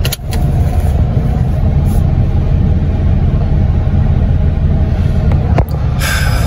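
Steady low rumble inside a car's cabin: engine and road noise of a car under way. There is a brief click just after the start and another near the end.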